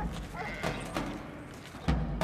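Village farmyard sounds: a short animal call early on and scattered knocks, then a deep, heavy thump near the end.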